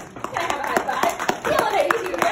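Audience clapping, many scattered individual claps, with voices over it.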